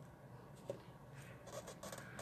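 Glue stick rubbed in short strokes over paper card, a faint scratchy sound starting a little past halfway, after one small click.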